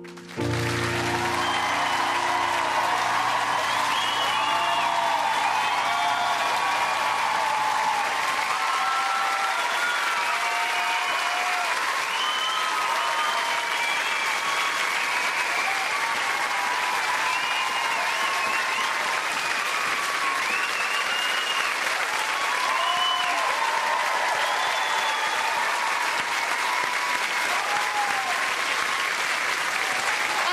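A large studio audience breaks into loud, sustained applause and cheering about half a second in, right at the end of an ice-dance routine. The last low held chord of the music lingers underneath for the first eight seconds or so.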